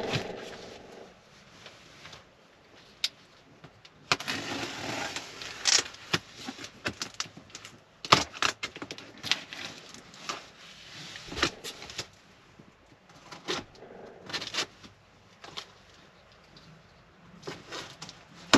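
A cardboard box being opened and handled by hand: irregular scrapes, rustles and knocks of the flaps and packaging.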